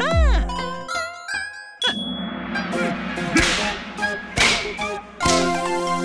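Cartoon soundtrack: light music with comic sound effects. A pitch-bending whistle-like note with a low thud at the start, a sharp ding about two seconds in, and three quick swishes in the second half.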